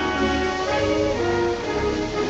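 Orchestral film score: strings and brass holding sustained notes.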